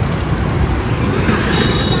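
Steady road traffic noise: a continuous rumble of passing vehicles, swelling slightly in the second half.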